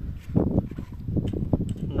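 Brief muttered speech over a low rumble of wind and handling noise on a hand-held phone's microphone.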